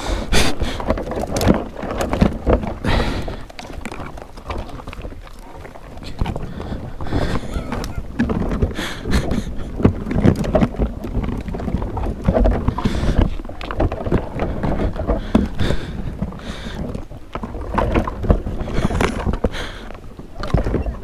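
Branches and brush crackling, snapping and scraping right against a helmet camera, with irregular knocks and rustles, as riders push through a thicket to reach a dirt bike down in the undergrowth.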